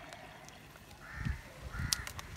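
A bird calling outdoors in short arched calls, twice in the second half. Under the calls are low knocks and rustling as a plastic cup of coco peat is pressed into a hole in a PVC pipe.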